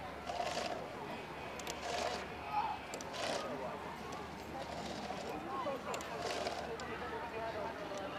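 Chainsaw chain being pulled along its bar by hand, the metal links giving a short rattling scrape every second or two, over faint voices in the background.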